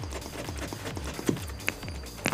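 Scissors cutting through a paper pattern sheet, with a few short crisp snips in the second half, over background music with a steady low beat.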